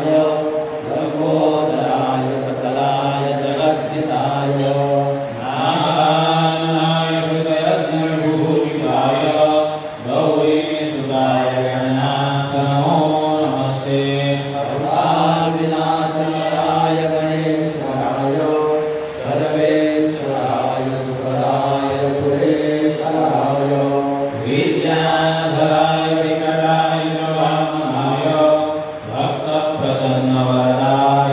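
Hindu devotional chanting, a sung mantra-like melody carried on continuously over a steady low drone.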